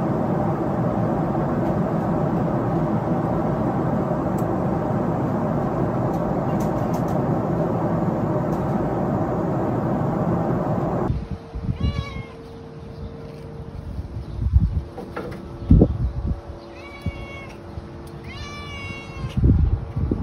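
Steady airliner cabin noise, the drone of the aircraft in flight. About 11 s in it gives way to a domestic cat meowing about four times, with a few dull thumps between the calls.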